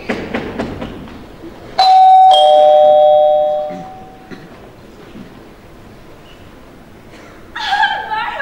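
Two-note ding-dong doorbell chime: a higher tone, then a lower one about half a second later, both ringing out and fading over about two seconds.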